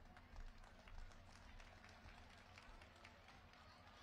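Near silence: faint background noise with a low hum through the microphone.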